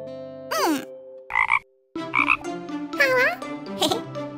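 Cartoon frog croaking in short bursts, about a second apart, mixed with sliding squeaky calls that rise and fall in pitch.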